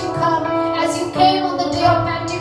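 A woman sings a Hindi worship song into a microphone, her voice gliding through held notes, accompanied by a Yamaha electronic keyboard.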